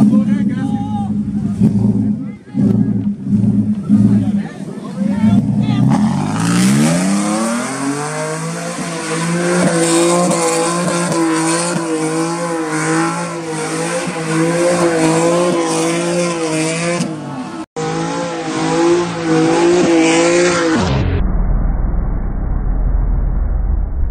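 Ford F-150 pickup doing a burnout. The engine pulses at lower revs at first, then revs up about six seconds in and is held high with a wavering pitch while the rear tyres spin and squeal. The sound cuts off suddenly near the end.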